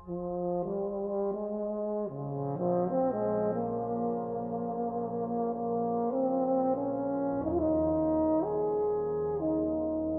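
A brass band playing slow, sustained chords that change about once a second, entering right at the start after a brief hush. A deeper bass note joins about seven and a half seconds in.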